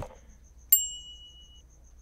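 A single bright notification ding from a laptop, a little under a second in, ringing out and fading within a second: the alert of an incoming match on a dating site.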